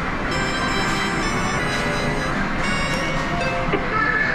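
Sigma Hot Lines video slot machine playing a string of electronic tones as its reels spin and stop on a small win, over the steady din of many game machines in a medal-game arcade.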